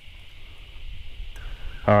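Quiet, steady background of low rumble and faint hiss with no distinct sound events. A man's voice begins at the very end.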